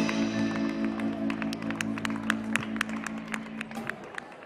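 A live band's last chord ringing out and fading away, with scattered hand claps from a few listeners starting about a second and a half in.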